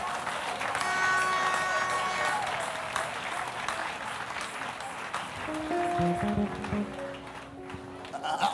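Congregation applauding, with instrumental music under it: a held chord about a second in, and low sustained notes near the end.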